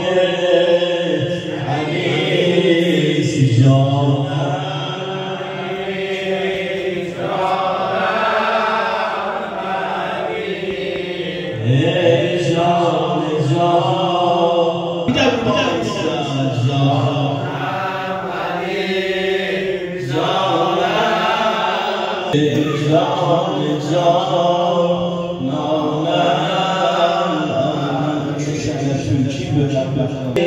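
A man chanting a Shia religious eulogy (maddahi) solo into a microphone, singing in long, melodic phrases with short breaths between them.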